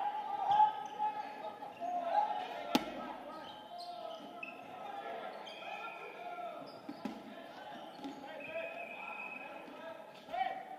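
Many voices calling out and chattering, echoing in a large gymnasium, with a sharp smack of a dodgeball hitting the hardwood floor about three seconds in and a softer one about seven seconds in.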